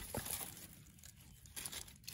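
Faint scraping and crunching of a narrow metal hand tool working into dry, stony soil and leaf litter around a seedling's roots.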